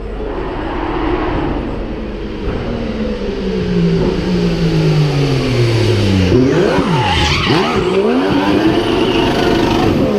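A Mercedes Formula 1 car's 1.6-litre V6 turbo hybrid engine revving during donuts. Its note first slides down in pitch, then swoops rapidly up and down from about six seconds in, while the rear tyres squeal against the asphalt.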